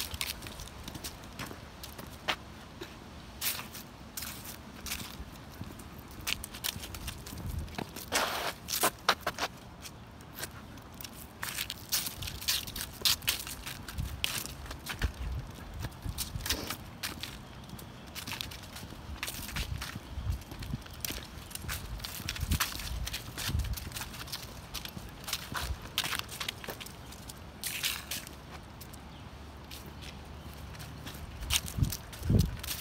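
Footsteps on a dirt trail littered with dry leaves and twigs: irregular crunching and crackling as people and dog step through the leaf litter.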